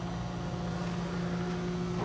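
Electric conveyor drive motors running on variable frequency drives: a steady hum with one low tone.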